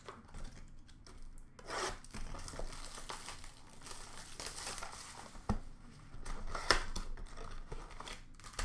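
Plastic shrink-wrap on a sealed hockey card box being torn off and crinkled by hand, a rustling, crackling run of tearing with a sharp tick about two-thirds of the way through.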